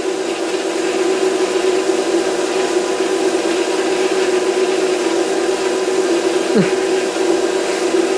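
Van de Graaff generator running: its electric motor driving the charging belt gives a steady hum with one constant tone over an even rushing noise.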